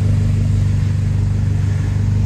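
Abarth 595 Turismo's turbocharged 1.4-litre four-cylinder engine idling steadily, a low even exhaust hum through an exhaust that is much louder and more aggressive sounding than a standard 595 Turismo's.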